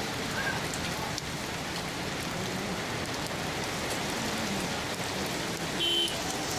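Heavy rain falling in a steady downpour, with scattered sharp drop hits. A short beep sounds just before the end.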